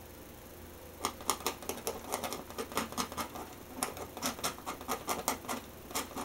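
Palette knife dabbing oil paint onto a stretched canvas: a quick, irregular run of light taps, about four a second, starting about a second in.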